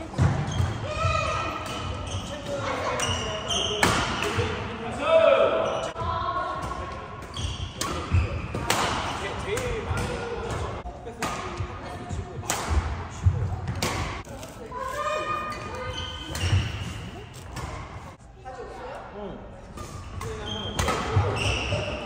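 Badminton rally in an indoor hall: rackets hitting the shuttlecock in sharp, irregular smacks, with short squeaks of shoes on the court floor and voices.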